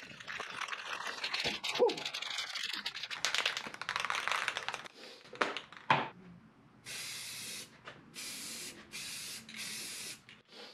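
Aerosol spray paint can shaken hard, its mixing ball rattling rapidly for about five seconds, then a couple of knocks, then four short hissing bursts of spray.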